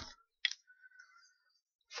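Near silence with one faint, short click about half a second in.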